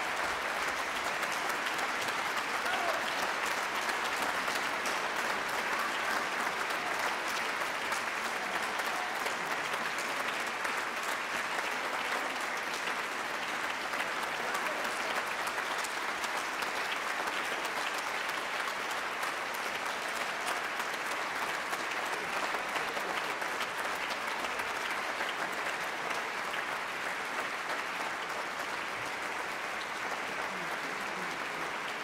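Large concert-hall audience applauding, a dense, steady clatter of many hands clapping that eases slightly near the end.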